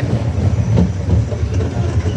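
Family roller coaster train running along its steel track: a continuous low rumble from the wheels on the rails.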